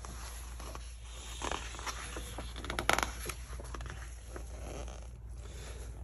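Paper pages of a softcover book being turned by hand: a soft rustle and slide of paper with a few light ticks, loudest about halfway through.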